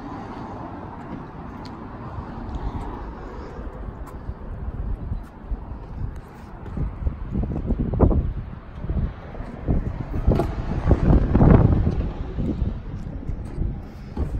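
Wind buffeting the microphone outdoors, coming in uneven low gusts that are loudest in the second half.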